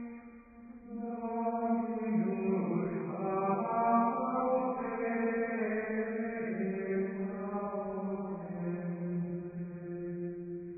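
Slow chanted singing of a psalm in Dutch, the voice holding long notes and stepping gently between pitches, after a brief pause at the start.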